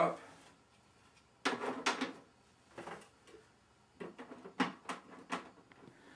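Empty plastic trays of a round food dehydrator being set onto the stack: short knocks and clatters of plastic on plastic, one group about a second and a half in and several more near the end.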